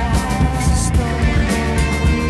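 Psychedelic blues-rock played on electric guitars and a drum kit, with steady drum hits under a guitar note that bends upward at the start.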